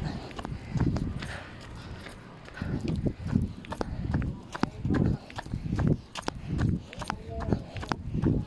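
Muffled low thumps about two a second, with rustling and sharp little clicks: handling noise from a phone camera rubbing and knocking against a person's shirt as they move.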